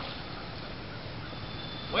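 Steady outdoor background hiss with a faint, continuous high-pitched whine. A man's voice starts right at the end.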